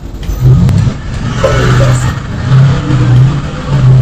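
Hip-hop beat between lines of the rap hook: a deep bass line of held notes that step between a few pitches, with a short vocal fragment in the middle.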